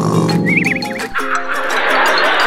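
A cartoon snoring sound effect: a warbling, whistle-like wobble over background music, which becomes fuller near the end.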